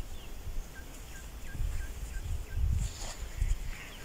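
A bird calling a run of six short, evenly spaced high notes, about three a second, over low rumbling and a brief rustle near the end.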